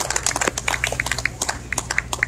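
Scattered hand-clapping from a small audience, thinning out toward the end, over a steady low hum.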